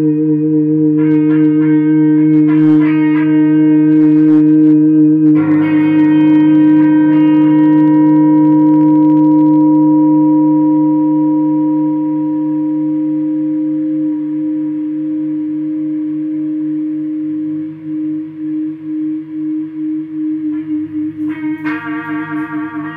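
Electric guitar feedback through an amplifier: a loud, sustained droning tone with steady overtones, with the strings struck several times in the first six seconds to add bright ringing notes. The drone slowly dies down, begins to pulse and waver near the end, and is struck again just before the close.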